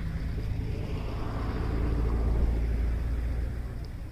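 A road vehicle going past outdoors: a low rumble with a rushing noise that swells about halfway through and fades toward the end.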